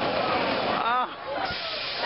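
Roller-coaster noise, a steady rushing hiss with voices over it; a sharper, higher hiss sets in about one and a half seconds in.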